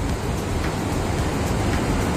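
Steady rushing noise of surf breaking on the shore below, with wind rumbling on the microphone.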